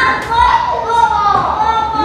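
Children's voices in a classroom, high-pitched talking that carries on throughout.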